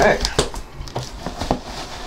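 Cardboard shipping box being pried open by gloved hands: a string of short sharp clicks and knocks of the flaps and cardboard, with a little rustling.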